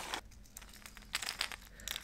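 A fishing lure's plastic packaging being opened by hand: a few short, faint crinkles and clicks in the second half.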